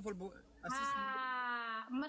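Talking, then a voice holding one long drawn-out vowel for about a second, its pitch sinking slightly before talking resumes.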